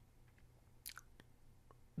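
Near silence broken by a few faint mouth clicks and lip smacks close to the microphone, about a second in and again shortly after.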